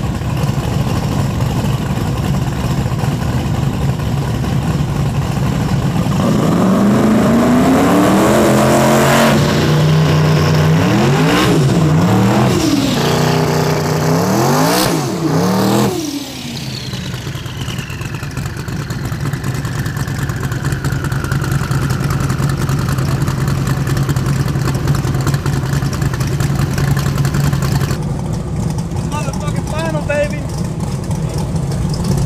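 A street drag car's engine revving hard through a tire-spinning burnout: the pitch climbs from about six seconds in, swings up and down several times, then drops suddenly around the midpoint to a steady idle that holds until an abrupt change near the end.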